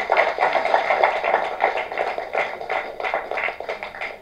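Audience applauding: a dense spatter of many hands clapping that thins out and tapers off near the end.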